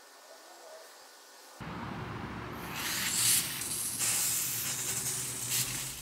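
Front-yard lawn sprinklers switching on about one and a half seconds in, then a steady hiss of spraying water.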